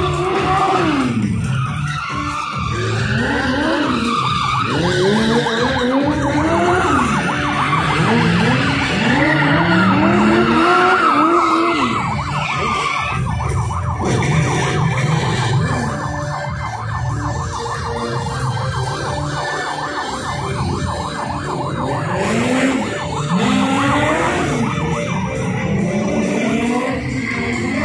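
Stunt cars revving hard and sliding, their engine notes rising and falling over and over, with skidding tyres and a police-style siren wailing.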